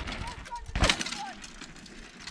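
A single sharp knock a little under a second in, over faint distant voices and low outdoor rumble.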